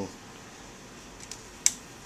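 A sharp click about three-quarters of the way through, preceded by a couple of faint ticks: an alligator clip snapping onto a cell terminal to close the circuit.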